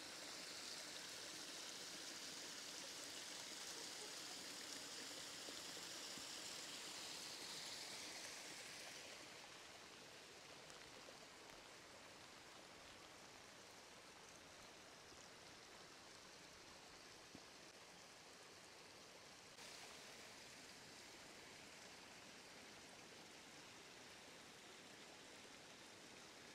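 Faint, steady hiss of rain mixed with rainwater running down a small hillside drainage channel. It is louder for the first nine seconds or so, then settles quieter.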